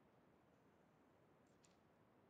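Near silence: room tone, with a couple of faint clicks about one and a half seconds in.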